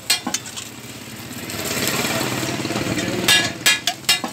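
Beaten egg poured onto a hot flat metal griddle, sizzling as it spreads. Sharp metallic clinks of a steel spatula and mug against the griddle come near the start and twice about three and a half seconds in.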